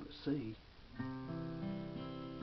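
Steel-string acoustic guitar picking a third interval in C. The notes are struck about a second in, with another note joining just after, and left ringing.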